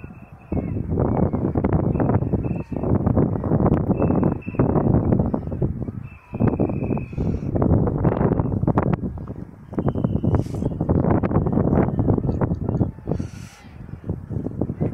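Wind buffeting the microphone in gusts of a few seconds, with short lulls between them; a faint high steady tone comes and goes several times.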